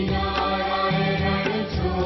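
Devotional aarti music: voices chanting a mantra to continuous instrumental accompaniment.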